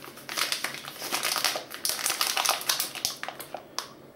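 Soft plastic film packaging of a moist toilet paper pack crinkling irregularly as it is handled and turned over in the hands, thinning out toward the end with one sharper crackle just before it stops.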